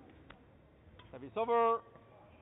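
A player's short shout: one held cry of about half a second, starting a little past the middle, after a couple of faint knocks.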